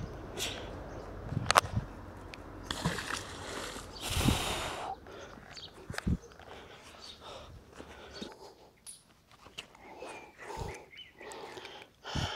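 Magnet-fishing rope being hauled in hand over hand, with scattered scuffs and knocks of handling and two longer rushes of breath-like noise about three and four seconds in.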